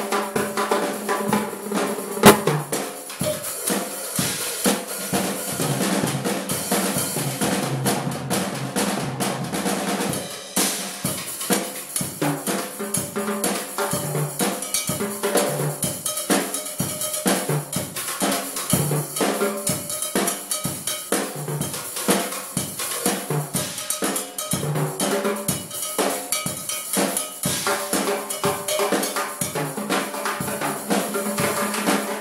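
Drum kit and timbales played together in a steady funk groove: kick and snare under sharp, ringing strikes on the timbales. One loud accent hit comes about two seconds in.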